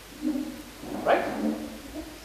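Speech only: a man lecturing, ending a point with a short questioning "right?".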